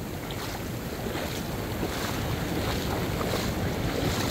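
Shallow surf washing in over the sand, a steady rush that slowly grows louder, with wind buffeting the microphone.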